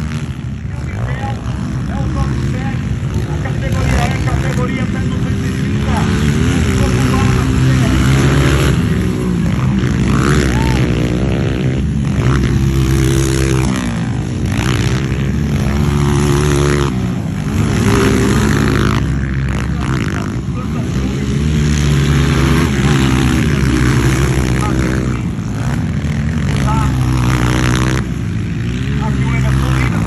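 Motocross dirt bikes racing, engines revving hard and easing off over and over so the pitch keeps rising and falling.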